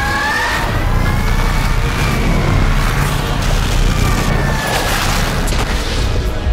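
Film sound effects of a small starship flying through a space battle: a heavy, steady low rumble under an engine whine that rises and then slowly falls, with explosion booms.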